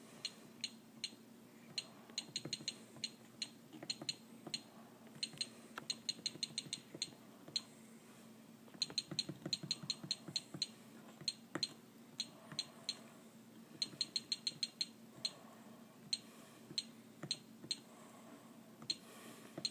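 Fluke DTX1800 cable analyzer keypad being pressed over and over, each press giving a short high-pitched beep with a click, sometimes singly and sometimes in quick runs of several presses, as characters are picked out one at a time on the save screen.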